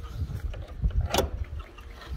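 Wind buffeting the microphone: an uneven low rumble, with one short sharp sound a little over a second in.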